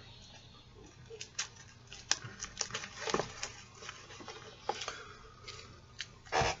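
Scattered light clicks and rustles of sports cards in rigid plastic top loaders being picked out of a box and handled, the hard plastic holders tapping against each other.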